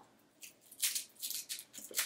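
A few short, crinkly rustles of a small piece of tape being picked and peeled off a fabric pouch's zipper pull.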